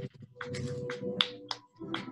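Several sharp, irregularly spaced hand claps heard over a video call's audio, with a faint steady hum underneath.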